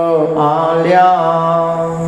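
A man's voice chanting a Buddhist Dhamma recitation on a long, level held pitch, the vowels changing slowly over it; the phrase breaks off right at the end.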